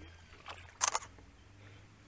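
A short splash of shallow river water about a second in, as a pirapitinga-do-sul (Brycon nattereri) is held and wetted in the water by hand, with faint water movement around it.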